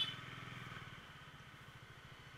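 Bajaj Dominar 400's single-cylinder engine running faintly at low speed, a steady low pulsing that fades a little as the bike slows. A brief high-pitched tone sounds at the very start.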